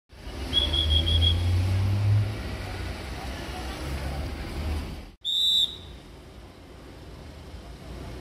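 Street sound with a nearby vehicle engine rumbling, strongest in the first two seconds, and a quick run of five short high beeps about half a second in. After a break a little past the midpoint, one short high beep, whistle-like, then quieter traffic noise.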